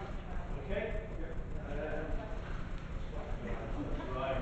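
Indistinct speech from the room's microphones over a steady low hum.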